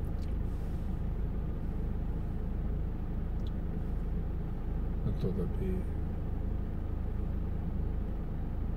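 Steady low rumble of a car idling, heard from inside the cabin while the car stands still. A brief snatch of voice comes about five seconds in.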